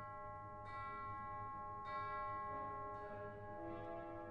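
Quiet passage of orchestral music: three struck notes ring out one after another, each sustaining, and softer lower notes enter in the second half.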